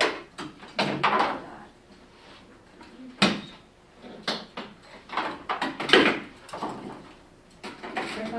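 Irregular sharp clicks and knocks, about seven in eight seconds, of small robot-kit parts being handled and knocked against a table.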